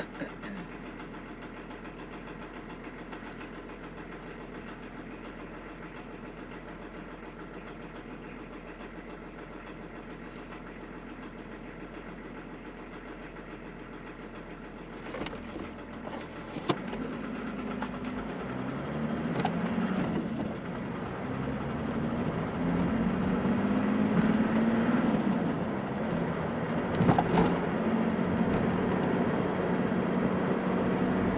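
Car engine idling steadily, heard from inside the car while it waits. A few clicks come about halfway through. Then the engine pulls away and accelerates, rising in pitch and getting louder, easing off briefly once or twice.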